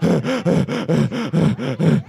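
A man's voice, through a stage microphone, making quick wordless sung syllables, each rising and falling in pitch, about six a second.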